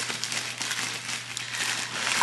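Package wrapping crinkling and rustling as it is handled and pulled open, a run of quick crackly rustles.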